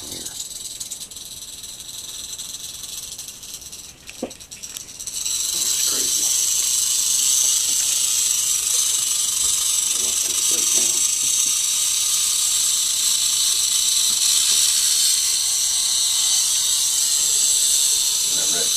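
Eastern diamondback rattlesnake rattling its tail: a continuous high, dry buzz that grows much louder about five seconds in and then holds steady, the snake's defensive warning.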